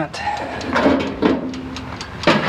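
Wire mesh baking trays clattering and scraping against metal as they are handled at a toaster oven, in an irregular series of light knocks and rattles.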